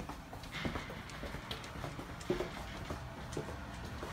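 Footsteps on a hardwood floor: a run of irregular knocks and light clicks, with a few brief squeaks, one louder knock a little past the middle.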